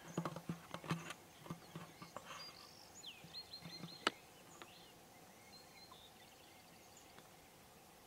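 Quiet outdoor ambience: soft knocks and rustles of handling in the first two seconds, a bird singing a short run of high notes about three seconds in, and one sharp click just after.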